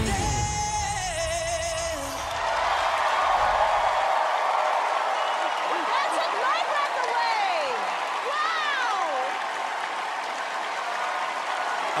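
A singer holds the final note of a pop ballad over the band, and the music ends about two seconds in. A studio audience then cheers and applauds, with high whoops and screams rising and falling through the noise.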